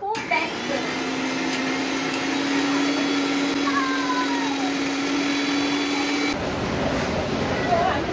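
Electric mixer grinder with a small steel jar running, a steady motor whine with a hum under it. It cuts off suddenly about six seconds in.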